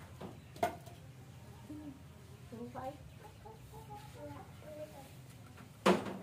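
Chickens clucking with short, scattered calls. There is a sharp knock about half a second in and a louder bang just before the end.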